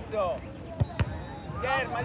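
A football being kicked twice in quick succession, two sharp thuds about a second in, among high voices calling out on the pitch.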